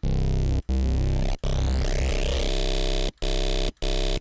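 Ableton Operator FM synth playing held square-wave tones as a vocoder carrier, a few notes with short breaks between them. About two and a half seconds in, the tone gets thicker and brighter with a buzzy hardness as the second square-wave oscillator is mixed in.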